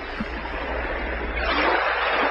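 Steady rushing water with a low, even hum underneath, swelling louder about one and a half seconds in.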